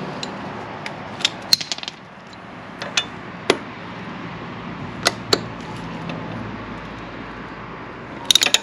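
Scattered sharp metal clicks and taps of a ratchet handle and socket extensions being fitted together, a cluster of them about a second in and single ones later, over a steady low hiss.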